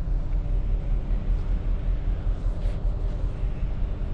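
Steady low rumble on the icebreaker's open deck, with a faint hum running through it: the ship's engines and machinery running as it moves through sea ice.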